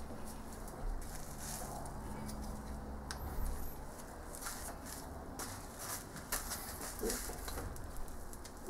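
Small metal lathe running at high spindle speed with a freshly faced faceplate mounted, a steady low motor-and-gear hum with scattered light clicks.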